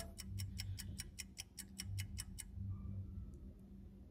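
Fast, even ticking of a game's countdown timer playing from a TV, about seven ticks a second, stopping about two and a half seconds in. A faint steady low hum lies underneath.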